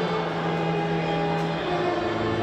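Small string ensemble of violins and a cello playing live, bowing long held notes in several parts over a sustained low cello note.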